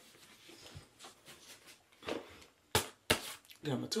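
Soft rustling as a fabric toiletry bag is handled, with two sharp knocks about a third of a second apart a little before three seconds in. A woman starts speaking near the end.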